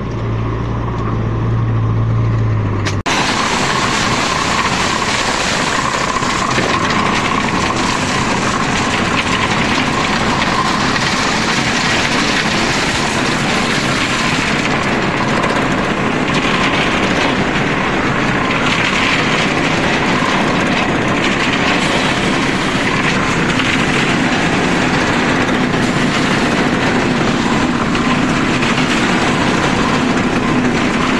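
Concrete batching plant machinery running: a steady low hum for about three seconds, then a sudden change to the continuous noisy churning of a reversible drum mixer turning with aggregate and concrete inside, discharging its batch.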